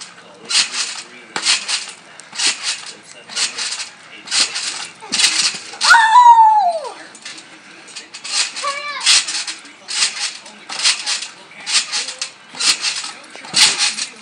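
Trampoline springs creaking and jingling with each bounce, in a steady rhythm about every half second. About six seconds in a child's voice gives a long cry that falls in pitch, with a shorter call near nine seconds.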